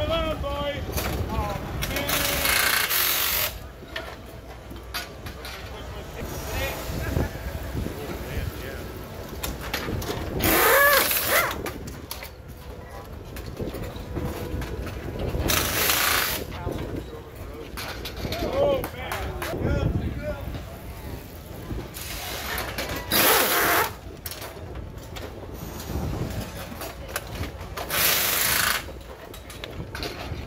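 Pneumatic impact wrench firing in about five short bursts, each about a second long, spinning the wheel axle nuts during a racing motorcycle's pit-stop wheel change. Crew voices talk around it.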